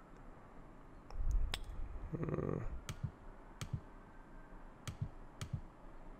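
Computer mouse clicking about five times, sharp single clicks spread over a few seconds, while a dropdown on screen is switched. A low, muffled rumble comes about a second in.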